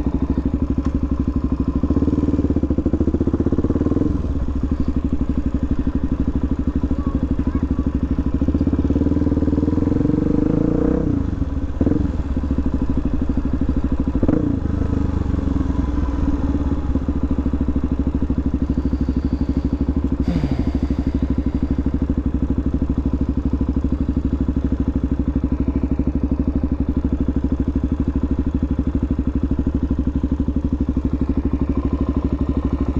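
Suzuki DR-Z400SM's single-cylinder four-stroke engine running at low speed. The revs rise and fall back a few times in the first fifteen seconds, then it holds a steady low note near idle.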